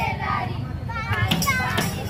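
Children's voices calling out together over a drum struck in a steady beat, about two strokes a second.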